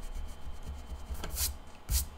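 An eraser scrubbing back and forth on sketchbook paper to rub out pencil lines. Near the end a hand sweeps across the page with a brief swish, and there is a dull thump just before it finishes.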